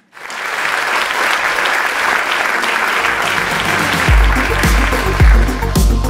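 Audience applause after a talk, a steady clapping. About halfway through, electronic music with a deep, regular bass beat fades in beneath it and grows louder as the clapping eases off near the end.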